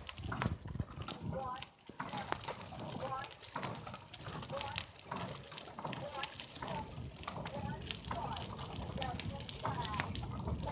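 Bicycle rattling and jolting over a gravel path: a constant run of irregular clicks and knocks with a rough crunching noise underneath.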